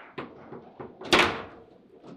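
Table football game in play: sharp clacks of the ball struck by the rod-mounted figures and of the rods knocking in the table, with one loud clack about a second in.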